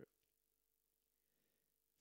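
Near silence: a dead gap in the commentary audio.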